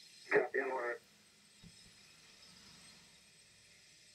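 A brief male voice reply of a second or less on the launch control radio loop, followed by faint steady hiss.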